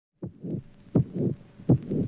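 Heartbeat sound effect: three deep double thumps, each a strong beat followed by a softer one, about one every three-quarters of a second.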